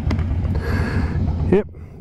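Harley-Davidson V-twin motorcycle idling in neutral, a steady low rumble with wind noise on the microphone; a voice starts near the end.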